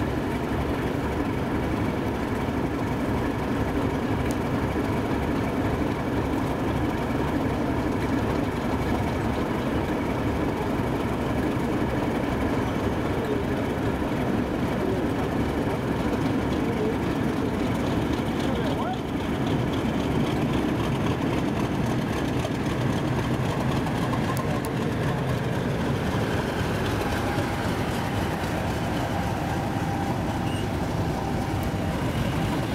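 British Rail heritage diesel locomotive engine running steadily.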